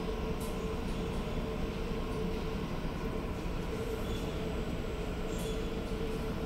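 Steady drone of a ferry's engines and machinery heard inside the ship, a low rumble with a constant hum.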